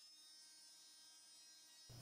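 Near silence, with only a faint, steady electric buzz from the oscillating cast saw's motor.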